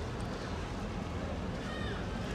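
Steady wash of canal water and wind on the microphone over a low rumble of boat traffic. Near the end a short high-pitched call sounds briefly.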